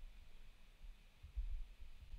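Near silence: faint low room hum, swelling slightly for a moment about one and a half seconds in.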